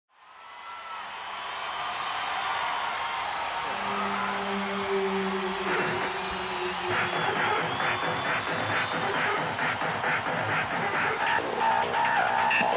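Live rock concert sound fading in: arena crowd cheering, with a held low synth-like note, then a rhythmic electronic intro starting about halfway through. Sharp percussion hits come in near the end.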